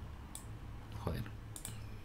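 A few sharp clicks of a computer mouse.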